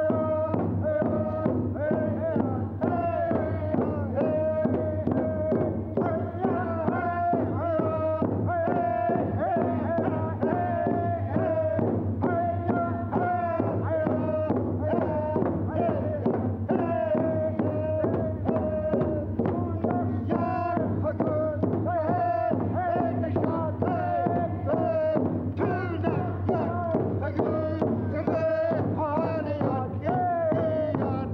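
A group of voices singing a Tlingit love song in unison, holding and bending long notes, over a steady beat that is typical of the frame drum used in Tlingit dance songs.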